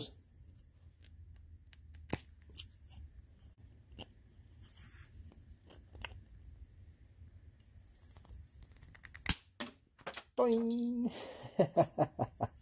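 Diagonal wire cutters snipping through the plastic tabs of a sliding closet door floor guide: a handful of short, sharp clicks spread over several seconds, the loudest snap about nine seconds in. A brief hummed voice follows near the end.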